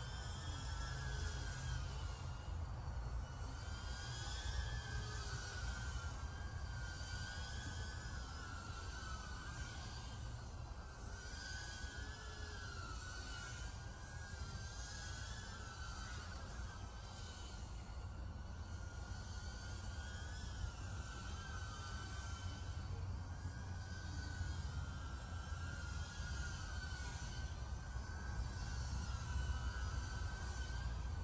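Emax Tinyhawk 3 tiny-whoop FPV quadcopter in flight: a thin, high whine from its small motors that wavers up and down in pitch as the throttle changes, over a low steady rumble.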